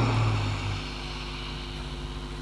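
A man's voice trails off on a held low note, then a steady low hum with light hiss fills the pause, with no other sound.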